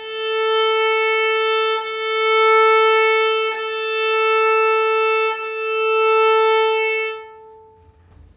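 Viola playing its open A string with whole bows: four long, steady notes on one pitch, the bow changing direction about every second and three-quarters, the last note fading out about seven seconds in.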